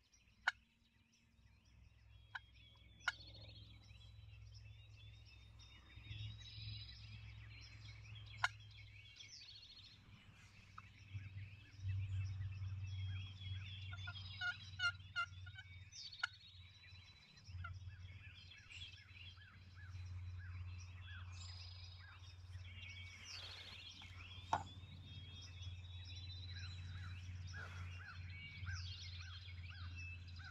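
Wild turkey gobbling among a dawn chorus of songbirds, with a rapid rattling gobble about halfway through. A few sharp clicks stand out, and a steady low rumble runs underneath.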